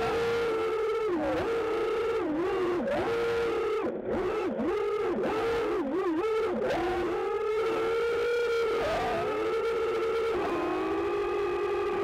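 EMAX Hawk 5 racing quad's 2306 1600 KV brushless motors whining, the pitch dipping sharply and recovering again and again as the throttle is chopped and punched, picked up by the onboard camera's microphone.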